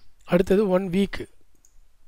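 A man speaks briefly, with computer mouse clicks; the rest is quiet room tone.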